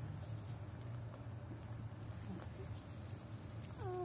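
Puppies shuffling in straw, with faint rustles and small clicks over a steady low hum. Near the end one puppy gives a short whine that falls in pitch.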